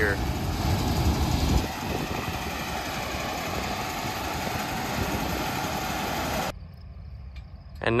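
Gleaner S98 combine harvester running as it makes its first cut into wheat: a steady mix of engine and threshing-machine noise, loudest in the first second and a half. About six and a half seconds in the sound drops abruptly to a much fainter rumble.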